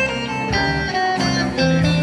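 Live country band playing an instrumental passage without vocals: a guitar picks a melody over a sustained bass line.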